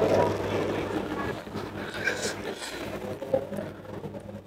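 A man's voice trailing off at the start, then faint handling sounds: light clicks and rustles of fresh herb leaves being folded by hand, over a steady low electrical hum.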